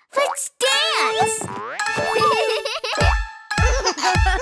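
A cartoon child's voice calls out over the start of a bright children's dance song, with a cartoon sound effect swooping down and back up in pitch. About three seconds in, a steady bass drum beat kicks in.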